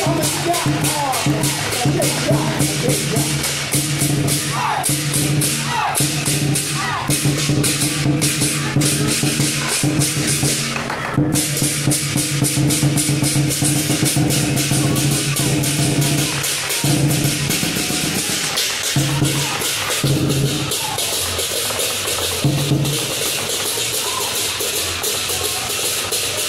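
Lion dance percussion band playing: dense, fast cymbal clashing over drum beats, with a low ringing tone underneath that cuts in and out in the second half.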